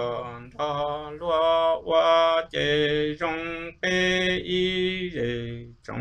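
A man singing Hmong kwv txhiaj, traditional sung poetry, as a solo voice. He holds long level notes that break briefly between phrases.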